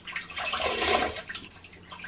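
Water splashing and sloshing in a bowl as a face is washed with a wet flannel, for about a second, then quieter.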